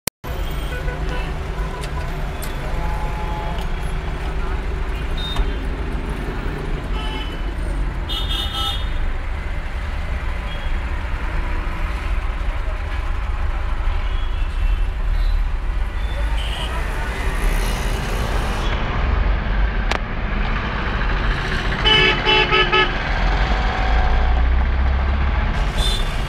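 City traffic heard from inside a moving taxi: a steady low engine and road rumble, with short horn toots from surrounding vehicles. There is one around eight seconds in and a cluster of repeated horn blasts near the end.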